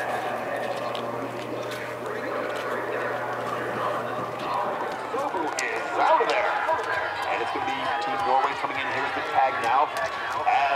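Coaches and spectators at a cross-country ski course calling out encouragement, with no commentary over it. The voices get louder and more excited from about six seconds in, with a few sharp clicks among them.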